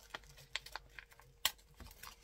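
Scattered light clicks and crackles of paper and plastic packaging being handled, with one sharper click about one and a half seconds in.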